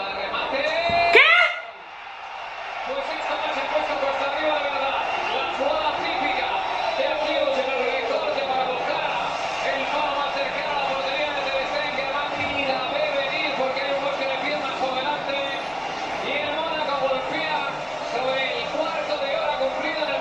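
Football match TV broadcast: a male commentator talking over steady stadium crowd noise, after a brief loud exclamation about a second in.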